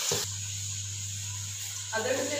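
Onions sizzling in hot ghee in an aluminium pot as a ladle stirs them, cut off after a fraction of a second, then a steady low hum with a faint hiss.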